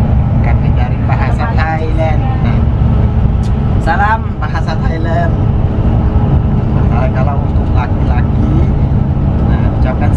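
Steady low rumble of a Sunlong coach bus, heard from inside the passenger cabin, with a man's voice speaking in short phrases over it.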